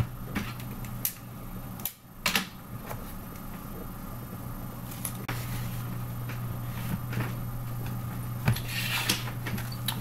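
Rolled paper and a paper model being handled: scattered short crinkles and taps as a paper ring is pushed into place in a paper rifle stock, with a longer rustle near the end. A steady low hum sits underneath.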